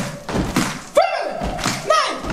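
Rhythmic stomping in a large hall, about one heavy thud a second, each landing with a short shouted or sung syllable, as part of an unaccompanied chant.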